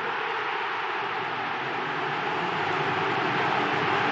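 Stadium crowd cheering a goal, a steady wall of noise that swells slightly as it goes on.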